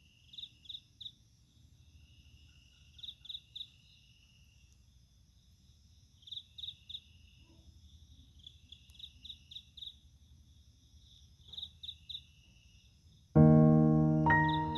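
Crickets chirping in short trills of three or four pulses, repeating about every three seconds, over a faint low rumble of night ambience. Near the end, music comes in loudly with a sustained piano-like chord.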